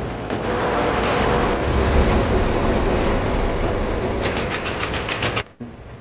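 A passing train: a loud, steady rumble that swells about two seconds in. Near the end a fast, even run of clicks comes in, and the whole sound cuts off abruptly a little past five seconds.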